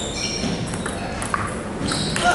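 Table tennis rally: the plastic ball ticking off the paddles and the table in several quick, sharp hits.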